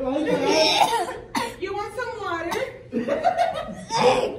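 People talking and laughing, the words unclear.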